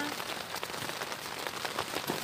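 Steady rain falling on a tent's fabric roof, heard from inside the tent as an even hiss of many small drops.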